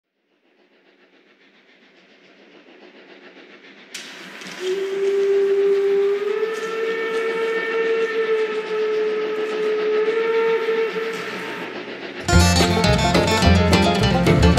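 Steam locomotive sound effect. The rolling train fades in, then the steam whistle blows one long note from about four and a half seconds, stepping up in pitch partway and dying away near eleven seconds. A banjo-led country band comes in about twelve seconds in.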